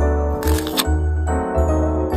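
Background music with a sustained melody and bass notes, with a brief scratchy noise about half a second in.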